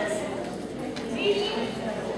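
A woman speaking, her voice carried through a hall's sound system.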